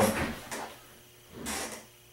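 A short scuffing noise about one and a half seconds in, as something is moved by hand.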